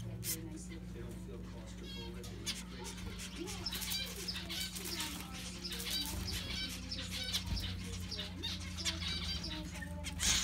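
Zebra finches calling at the nest while the father feeds the chick: a run of short, quick calls, several a second, over a steady low hum.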